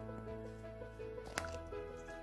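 Soft background music with steady held notes, and one sharp click about one and a half seconds in as the plastic cap of a stick deodorant is pulled off.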